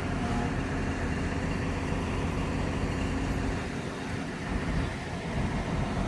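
Engine of a truck-mounted mobile crane running steadily, a low even hum that eases slightly for a second or so past the middle.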